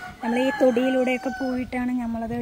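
A rooster crowing once, one long drawn-out call of about a second and a half, behind a woman talking.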